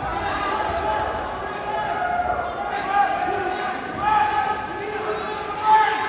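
Overlapping shouts from coaches and spectators echoing in a gymnasium during a wrestling bout, with several louder shouts about three, four and nearly six seconds in.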